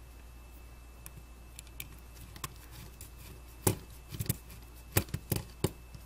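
Light clicks and taps of a small screwdriver and screws against a metal heatsink and circuit board as screws are set loosely into the stepper driver chips. A few faint ticks come first, then a cluster of sharper knocks in the second half.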